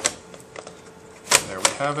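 Two sharp clicks about a third of a second apart: a netbook's screen hinges being pressed down and seated into the base as the display assembly is slid back into place.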